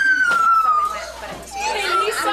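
A young child's long, high-pitched squeal, slowly falling in pitch and ending about a second in, followed by children's voices.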